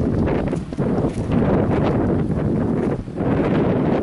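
Wind buffeting the camera microphone: a loud, uneven rush of noise with a couple of short lulls.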